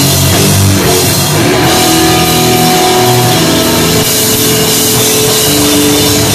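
Hardcore punk band playing loud and live on electric guitar, bass guitar and drum kit, with long held notes ringing through.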